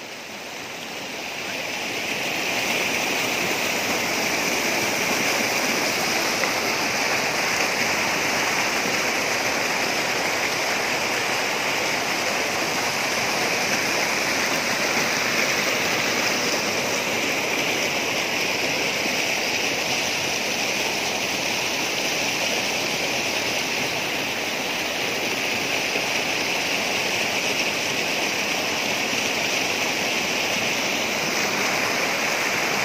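Spring-fed mountain stream rushing and splashing over mossy rocks in a small cascade: a steady rush of water that grows louder over the first two seconds, then holds even.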